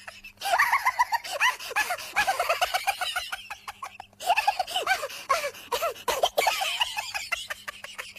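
High-pitched giggling laughter in rapid ha-ha bursts, several a second, pausing briefly near the start and again about four seconds in.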